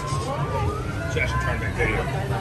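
A distant siren whose pitch rises slowly, heard over background crowd chatter.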